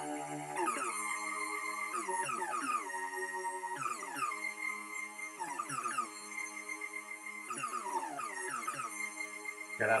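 Access Virus TI synthesizer playing sustained electronic tones that step between notes, each change marked by a falling sweep every second or so. The notes and sweeps follow hand movements read by a webcam and turned into MIDI.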